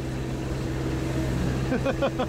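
All-terrain vehicle engine running steadily at low revs, heard from inside the cab as the vehicle creeps forward in gear on its own after the clutch is released. A short burst of a child's voice comes near the end.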